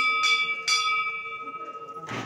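Temple bell rung with quick strokes about half a second apart, its ringing tone lingering and slowly fading.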